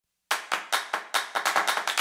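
Rhythmic handclaps opening an intro music track: about five sharp claps a second, doubling in speed about halfway through.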